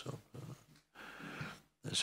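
A man's faint hesitation sounds close to the microphone: a few low muttered fragments, then a breathy exhale of about half a second.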